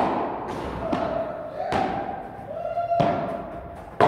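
Padel ball being struck by rackets and bouncing off the court and glass walls: a run of sharp knocks, five or so in four seconds, each ringing on in a large hall.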